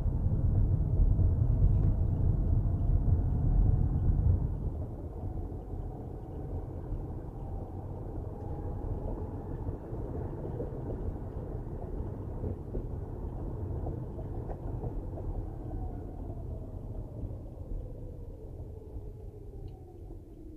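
Road and engine noise of a car driving on a city street, heard from inside the car: a heavy low rumble for the first four seconds or so, then quieter steady tyre and engine noise. A faint whine drifts in pitch and falls near the end.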